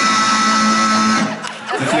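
Electric guitar chord strummed and left ringing, then stopped about a second in.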